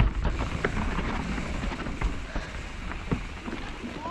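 Riding noise from a 2019 YT Capra mountain bike rolling over a slatted wooden berm and onto dirt trail. A steady rush of tyre, ground and wind noise runs through it, with scattered clicks and knocks from the wooden slats and the rattling bike.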